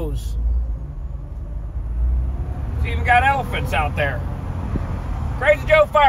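Steady low rumble of an old Jeep Wrangler's engine and road noise, heard from inside the cab while driving. A voice comes in about three seconds in and again near the end.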